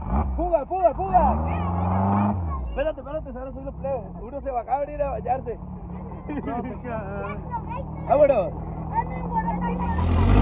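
Open dune buggy's engine running as it drives; its revs rise about a second in and drop back, then it runs steadily.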